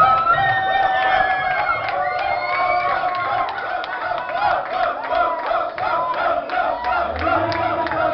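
A crowd cheering and shouting over music, with a quick, steady beat that comes in about halfway through.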